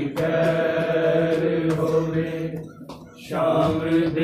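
A group of men chanting a Punjabi noha in unison, holding one long drawn-out note. It dies away a little after two and a half seconds and comes back about half a second later, with faint regular strikes keeping time.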